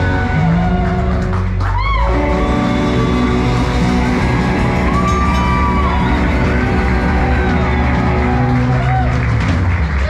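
A live country band playing: fiddle, electric guitar, bass guitar and drums.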